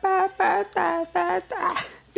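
A young man's voice making a run of short, repeated vocal sounds, about three a second, with a longer, higher one near the end.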